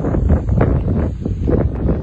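Wind buffeting a phone's microphone: a loud, gusty rush that rises and falls unevenly.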